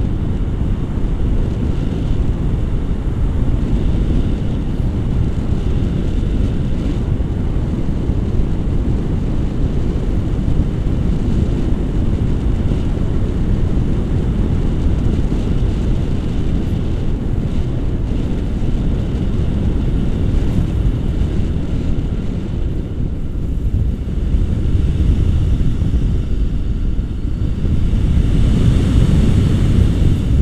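Wind rushing over an action camera's microphone in paraglider flight, a steady low rush that swells slightly near the end.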